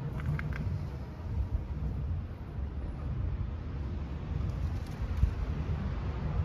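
Low, fluctuating rumble of outdoor city background noise, with a few faint clicks soon after the start.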